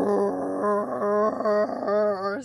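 A woman imitating a street sweeper with her voice: one held, hummed drone that pulses rhythmically, about two or three beats a second.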